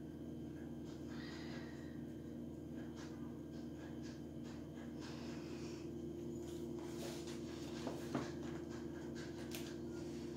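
Faint light scratching, like small craft materials being handled, over a steady low hum, with a few small taps and clicks in the last few seconds.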